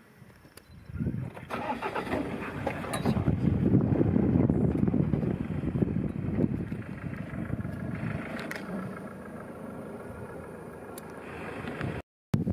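A safari truck's engine starts about a second in and runs, loudest a few seconds later and then easing off.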